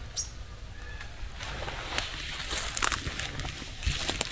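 Rustling and light knocks of a hand-held camera being turned around, over a low wind rumble on the microphone, with two short bird chirps right at the start.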